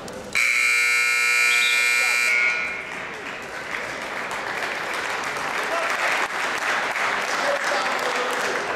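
Scoreboard buzzer sounding once for about two seconds, signalling the end of the wrestling period as the wrestlers break apart, followed by crowd noise and voices in the gym.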